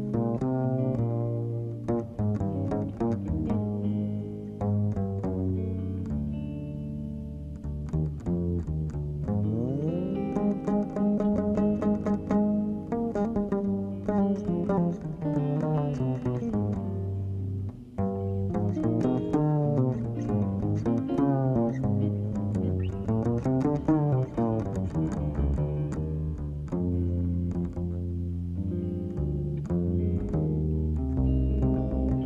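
Upright double bass played pizzicato, carrying a slow melodic line with some sliding notes, with electric guitar playing alongside.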